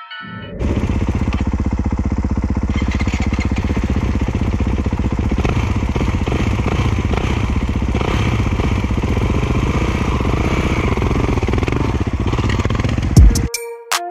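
Kawasaki KX450 dirt bike's single-cylinder four-stroke engine idling steadily close by, at an even pitch with no revving. It starts abruptly about half a second in and cuts off just before the end, with music on either side.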